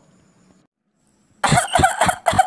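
A woman coughing, several rough coughs in quick succession beginning about one and a half seconds in.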